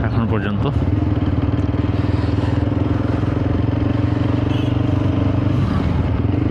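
TVS Apache RTR 160 4V single-cylinder motorcycle engine running steadily under way at low speed, a constant drone with no sharp events.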